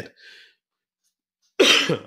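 A man clears his throat once, with a short, rough, cough-like burst near the end.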